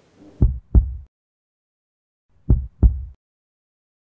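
Heartbeat sound effect: two slow double thumps, lub-dub, about two seconds apart, low and otherwise silent between the beats.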